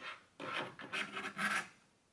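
Kitchen knife blade scraping across a cutting board in three strokes, gathering diced sausage and ham. There is a short tap just before the scrapes.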